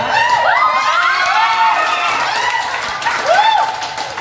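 A classroom of teenage students cheering and shouting together, many voices at once, with laughter mixed in.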